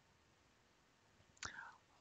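Near silence: faint room hiss, with a short, faint breath near the end.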